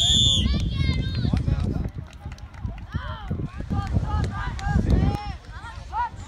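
A referee's pea whistle blown in one long, steady blast that stops about half a second in, signalling the end of the play. Then several voices call out across the field, with a low rumble underneath.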